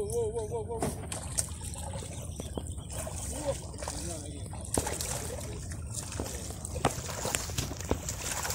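Sea water sloshing and trickling against breakwater rocks, with a few sharp clicks scattered through.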